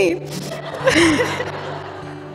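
Wedding guests laughing briefly about a second in, in reaction to a joke in a toast, over a soft music bed.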